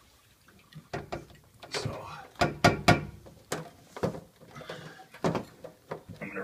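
Handling noise under a kitchen sink cabinet: a run of sharp knocks, clicks and rustles as a hose is wrapped around the pipes and fitted in place.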